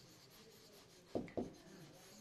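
Faint scratch of a pen writing on an interactive whiteboard screen as a word is written out, with two short, louder knocks just past halfway.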